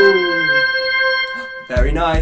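Electronic-organ backing music: a falling slide in pitch settles into one held note, which cuts off about 1.7 s in. A voice comes in with low thumps near the end.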